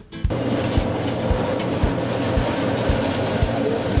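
A motor-driven coffee processing machine with a steel hopper starts running about a quarter second in and runs steadily, with a soft beat of background music underneath.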